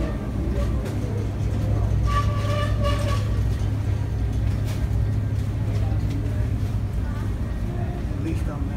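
Shop ambience: a steady low hum, with faint voices about two to three seconds in.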